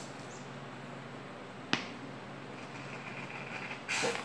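A plastic cap being forced onto a plastic bottle by hand, with one sharp click a little under two seconds in, over low steady room noise.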